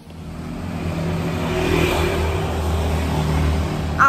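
A motor vehicle running close by on a street, its engine hum building over the first second and then holding steady, with road noise swelling about halfway through.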